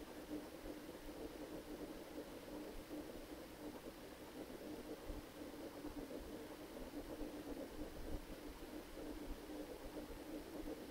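Faint steady background hum with a low droning tone held throughout and no clear events.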